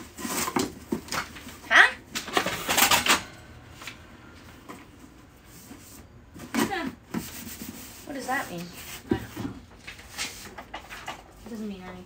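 Cardboard shipping box being opened out and handled, its flaps scraping and flapping loudest in the first three seconds or so, followed by quieter rustling as items and paper go in. A faint voice is heard in the background partway through.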